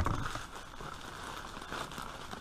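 Plastic and brown-paper parcel wrapping crinkling and rustling as the parcel is lifted and turned over, after a light knock at the very start.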